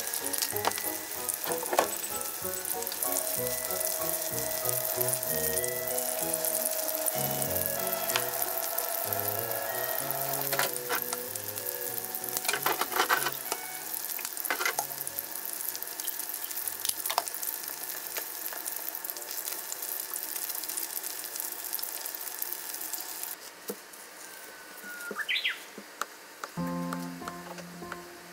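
Chicken pieces sizzling as they fry in oil in a frying pan, a steady hiss with a few sharp clicks. The sizzle cuts off suddenly near the end.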